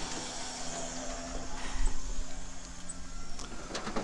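Steady low hum of a motor vehicle's engine, which stops a little before the end. An even, faint high-pitched hiss runs underneath.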